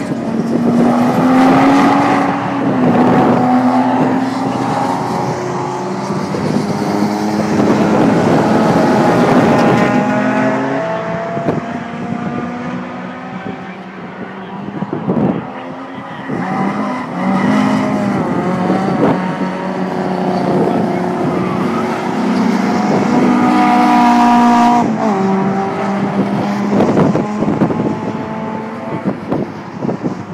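Cars lapping a race circuit at speed: engines rev up through the gears and drop back at each gear change, rising and falling as one car after another passes.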